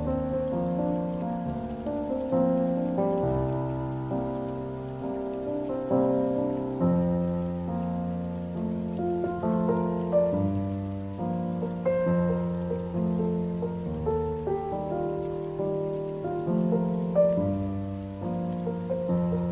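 Solo piano playing a slow, gentle arrangement of a K-pop ballad: sustained low bass notes under a ringing melody, with chords changing about every second or two.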